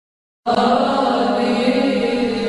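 Title music of sustained choral chant. It starts suddenly about half a second in and holds a steady chord.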